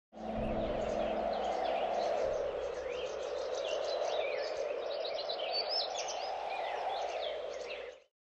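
Birds chirping and singing over a steady rushing outdoor ambience, a nature soundscape that fades out near the end.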